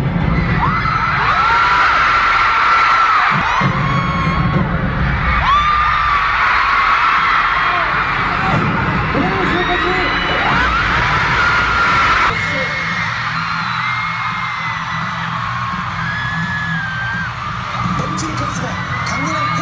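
Concert music in a large arena with a deep pulsing beat, under long high-pitched screams from the crowd; the sound changes abruptly about twelve seconds in.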